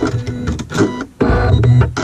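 Janome Horizon embroidery machine stitching a seam, a steady mechanical hum with a brief drop about a second in.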